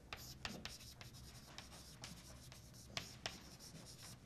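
Chalk writing on a blackboard: faint scratching with a run of short taps and strokes as a word is written out.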